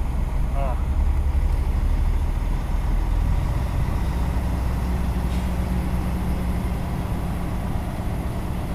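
Heavy truck's diesel engine running steadily, heard from inside the cab as a low rumble. The truck is pulling empty up a hill in a slow-moving queue.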